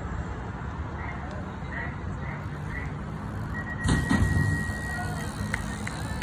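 BMX start-gate sequence: a long steady electronic tone from the start system, with the metal start gate banging down about four seconds in. A few sharp clicks follow, against steady outdoor background noise.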